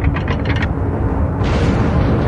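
Bank-vault door sound effect: a rapid ratcheting click, about nine a second, that stops under a second in, over a heavy low rumble. A hissing swell joins the rumble about one and a half seconds in as the door opens.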